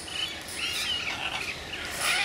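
A short bird chirp that rises and falls in pitch about two-thirds of a second in, over a steady high outdoor hiss.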